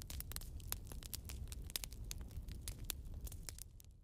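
Open fire crackling, with irregular sharp pops over a low rumble, fading out near the end.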